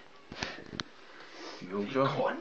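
A couple of quick sniffs through the nose and a faint click, then a man's voice starting to speak near the end.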